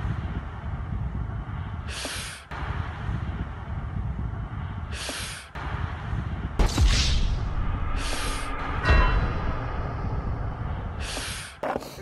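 Outdoor roadside noise with wind rumbling on a phone microphone. A louder sudden noise comes about seven seconds in, and short hissing bursts come back about every three seconds.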